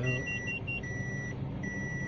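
A car's reverse warning beeper sounding in the cabin: a steady high beep of about half a second, repeating a little more than once a second, the signal that the automatic is in reverse while backing into a parking space. In the first second a quicker run of short, higher pips sounds alongside it, over a low engine hum.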